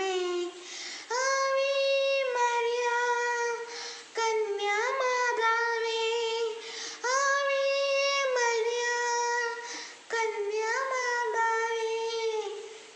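A boy singing a Malayalam Marian devotional song solo without accompaniment: four phrases of long, held notes with short breath pauses between them.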